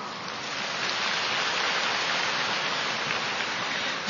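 Audience applause, steady throughout, following the end of a point in the talk.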